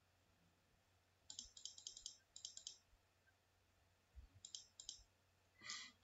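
Faint computer clicking in two runs: a quick series of about a dozen clicks about a second in, then a few more clicks around four to five seconds; otherwise near silence.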